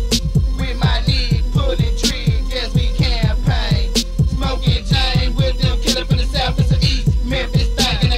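Hip hop track: a rapper's verse over a beat of quick, falling bass hits and steady synth tones.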